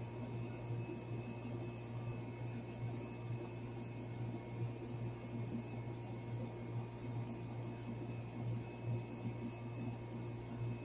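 Miller package air conditioning unit running steadily, its compressor and newly replaced condenser fan motor giving a low, even hum with a slight waver and a faint whir over it.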